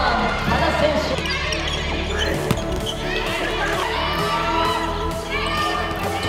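Handball bouncing on a hard indoor court floor, with players' shouts and background music throughout.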